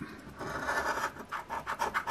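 A copper coin scratching the coating off a scratch-off lottery ticket: a faint rubbing that starts about half a second in and turns into a quick run of short scratching strokes.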